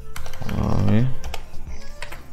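Computer keyboard keystrokes, a run of quick clicks as a word is typed and then backspaced out. A short voice sound, falling in pitch, comes over the keys about half a second in.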